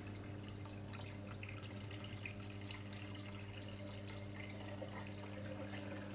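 Water trickling and dripping out of an aquaponic grow bed's siphon drain into the fish tank, the sign that the siphon is flowing again. A steady low hum runs underneath.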